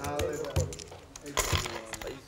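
Voices of players and onlookers around a poker table, with a couple of short sharp clicks about a second and a half in as poker chips are pushed and stacked.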